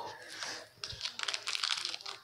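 Foil wrapper of a Pokémon booster pack crinkling as it is handled, with a quick run of crackles from about a second in.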